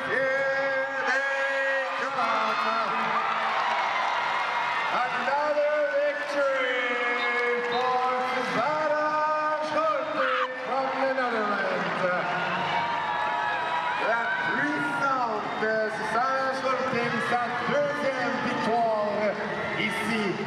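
A sports commentator's voice, raised and excited, running without pause over arena crowd noise through the race finish.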